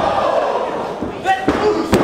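Three sharp slams of wrestlers' bodies hitting the ring mat in the second half, the last one the loudest, under shouting voices from the spectators.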